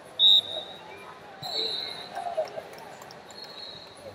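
Referee's whistle blasts over the murmur of an arena crowd: one short, loud blast a moment in, then two longer, softer ones a second or two apart, sounding a stoppage in the wrestling.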